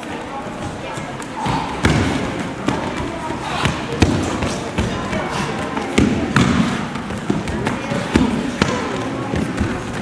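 Irregular thuds of bodies and bare feet hitting tatami mats as two attackers rush in and are thrown in turn, with voices in a large hall behind.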